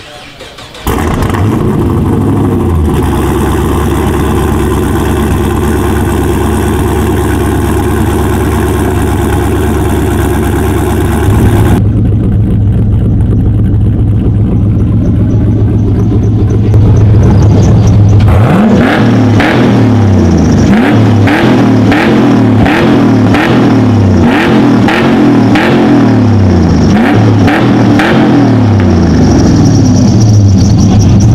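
The Ice Charger's 500 hp V8 crate engine running loudly through a nearly unmuffled straight-pipe exhaust with double-walled tips. It comes in suddenly about a second in and runs steadily, then from about 18 s it is blipped over and over, revving up and dropping back about once a second.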